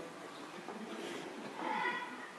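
The end of orchestral music dying away into a quiet hall, then a short high-pitched vocal sound near the end, the start of a stifled laugh.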